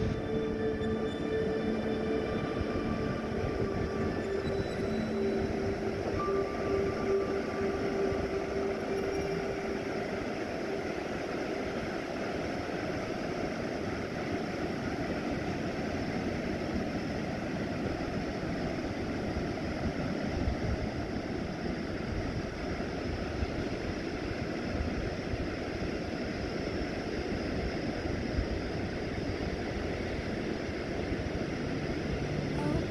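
Surf breaking on a sandy beach: a steady rushing wash of waves. A few held tones of ambient music fade away during the first ten seconds or so.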